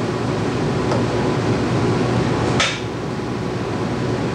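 A steady, dense, rapid clatter with sharp knocks, one about a second in and a louder one near three seconds in.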